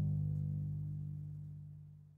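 The last chord of a llanero pasaje on harp, cuatro and bass ringing out and fading away, the low bass notes lasting longest.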